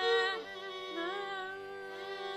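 Carnatic music: a sung note is held and dies away about half a second in. A quieter gliding melodic line follows over the tanpura's steady drone.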